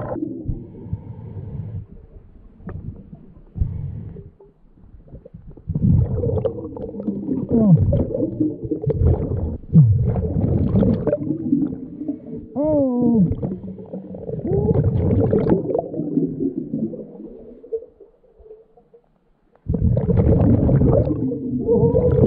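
Underwater sound of a scuba diver breathing through a regulator: long rushes of exhaled bubbles with a few short squeaky rising and falling tones, separated by quieter gaps.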